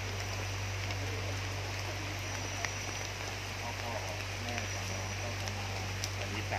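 Steady rain falling, with scattered drop ticks, faint voices of people in the background and a low steady hum underneath.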